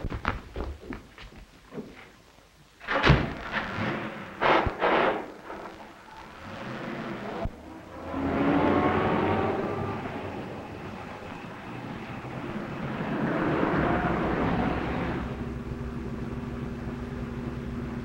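A car door slams about three seconds in, with a few more knocks after it. Then a car engine runs and accelerates, swelling in loudness twice, and settles into a steady drone near the end.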